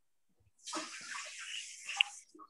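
A steady rushing hiss, like water running, coming in about half a second in and lasting about a second and a half, with faint low sounds beneath it.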